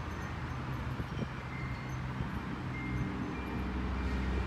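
Outdoor ambience dominated by a low, steady mechanical hum that grows slightly louder near the end, with two brief faint high tones.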